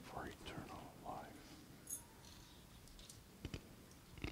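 Very quiet, reverberant church with a faint whispered voice in the first second or so, followed by a few light clicks.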